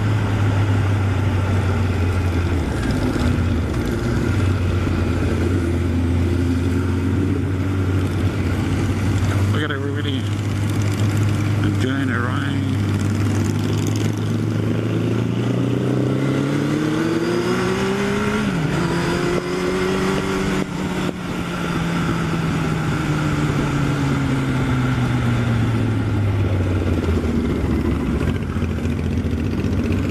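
Honda CB1100SF X11's inline-four engine under way, with heavy wind rush on the helmet microphone. Its pitch climbs in the middle, drops suddenly once at an upshift, climbs again, then falls steadily as the bike slows.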